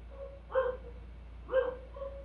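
A dog barking twice in the background, two short high yaps about a second apart.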